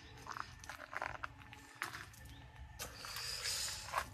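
Faint footsteps crunching on loose wood-chip and gravel ground, with scattered small clicks and a soft rustle about three seconds in.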